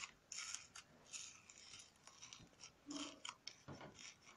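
Fingers squishing and pressing bubbly slime in a plastic tub: faint, irregular crackles and small pops.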